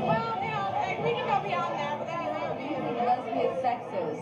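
Speech only: voices talking, overlapping one another.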